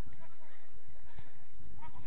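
Players' voices shouting short calls across the pitch, the clearest a rising and falling call near the end, over a steady low rumble.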